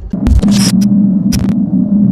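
Logo-intro sound effect: a loud, steady electric buzz that switches on abruptly, with several sharp glitchy static crackles breaking in over it.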